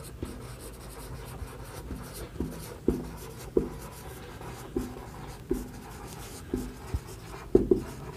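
Marker pen writing on a whiteboard: a quiet run of short, irregular taps and squeaks of the felt tip as each stroke of handwriting is made.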